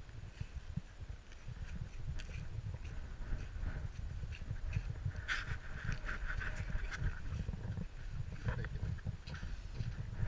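Low rumble of wind and jostling on the microphone, with irregular soft scuffs from a dog walking close by on a snowy path. There is a brief louder rustle about five seconds in.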